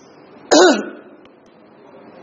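A man clears his throat once, about half a second in: a short, sharp sound with a brief falling voiced tail. Low, steady room noise fills the rest.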